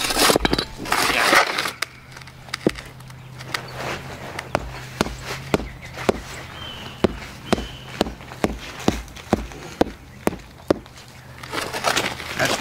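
Rubber mallet tapping a concrete landscape block, a long run of sharp knocks about two or three a second, seating the stone down level in a bed of dry concrete mix. The first couple of seconds hold louder scraping from a shovel working the mix in a wheelbarrow.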